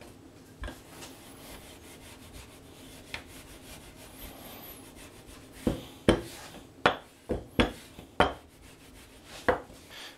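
Wooden rolling pin rolling out a round of dough on a countertop: a quiet rubbing for the first half, then a run of about seven sharp knocks in the last four seconds.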